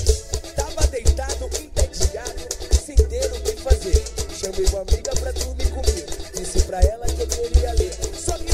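Brazilian pagode-style dance music: a deep, heavy bass beat with busy high percussion and a wavering melody line over it.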